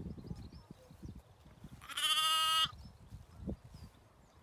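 A young lamb bleating once, about two seconds in: a single high, clear bleat lasting well under a second that dips slightly in pitch at the end.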